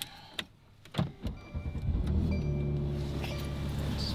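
Mercedes-AMG C-Class engine starting: a click about a second in, then the engine cranks and catches and settles into a steady idle.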